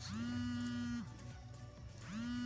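Mobile phone ringing: a steady electronic tone about a second long that rises slightly in pitch as it starts.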